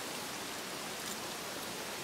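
Steady rush of a river flowing, an even noise with no distinct events.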